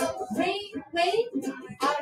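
Children singing a school song.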